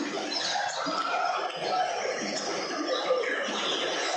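Steady background hiss, even and unchanging, with faint indistinct wavering sounds in it.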